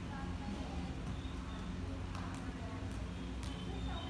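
A volleyball being passed back and forth, with a few sharp slaps of hands and forearms on the ball in the second half, over distant players' voices and a steady low background hum.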